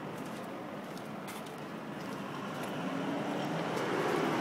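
A vehicle engine running nearby, its steady rumble slowly growing louder, with a faint steady hum in the last second or so.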